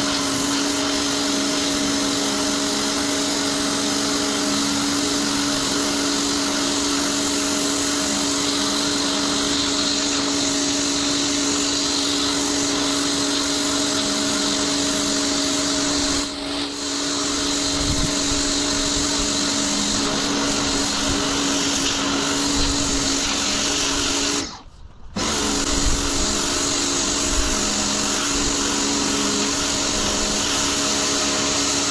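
Pressure washer running steadily, its motor holding one constant hum under the hiss of the water jet blasting dirt off concrete paving slabs. The sound drops out for under a second near the end.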